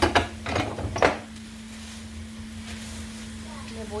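Plastic sheet rustling as hamburger meat is pressed flat like a tortilla: three short rustles within the first second or so, then quiet handling over a steady low hum.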